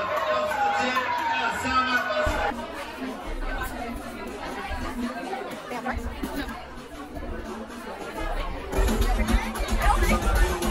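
Club music and crowd chatter in a crowded hall, with a voice over it for the first couple of seconds. The sound then drops to a lower din of chatter, and loud, bass-heavy dance music comes back near the end.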